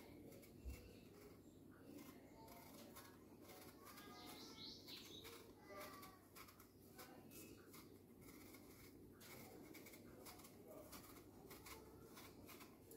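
Near silence: a paring knife faintly ticking and scraping as it peels the skin off an apple, with faint chirps in the background.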